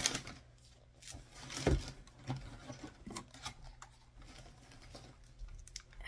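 Hands rummaging in a cardboard shipping box: scattered rustles, taps and light knocks as packed items are moved and lifted out, with one louder knock about a second and a half in.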